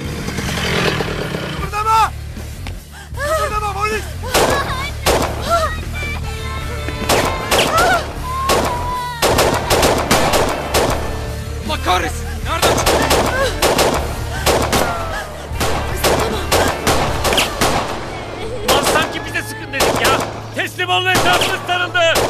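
Gunfire in a staged shootout: many sharp shots, single and in rapid strings, throughout, over dramatic background music with a steady low drone.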